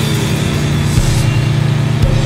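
Crossover hardcore punk music: heavily distorted electric guitar and bass holding a droning chord, with little drumming until the end.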